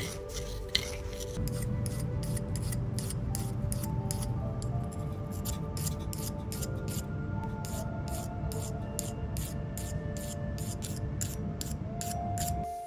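Background music with sustained notes, over the repeated rasping strokes of a hand file working a cast bronze ring to blend away sprue marks.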